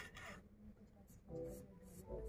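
Faint scratching of a pencil on drawing paper as a curved outline is sketched, with a short stroke just at the start.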